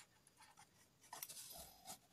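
Faint scratching of a pen writing on paper, mostly in the second half.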